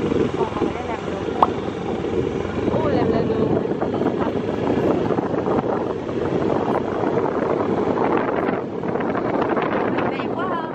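Wind buffeting the microphone over the steady running of a small motorbike while riding along a hilly road.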